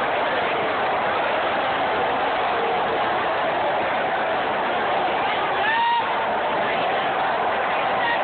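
Large stadium crowd: a steady mass of voices and chatter from the packed stands. A single short rising call stands out briefly about six seconds in.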